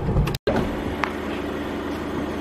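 A brief break in the sound near the start, then the steady low hum of a car engine idling, with a single click about a second in.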